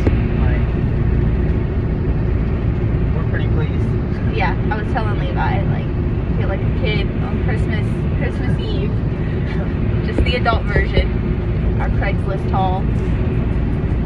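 Steady low road and engine rumble inside the cabin of a moving vehicle, with short snatches of people talking now and then.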